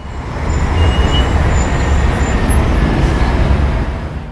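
Loud city traffic noise: a steady low rumble of road vehicles with a wide hiss over it, swelling up in the first half second.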